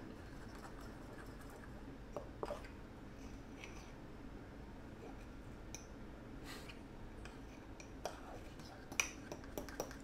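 A metal fork stirring batter in a mug, faint, with a few light clicks of the fork against the mug's side scattered through.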